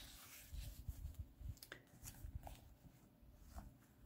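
Faint rustling and soft bumps of a worn paperback with loose pages being handled and closed, with a few small paper clicks.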